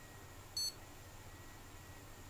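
A single short, high electronic beep from the motherboard's POST buzzer as the board powers on and runs its self-test, over a faint steady hum.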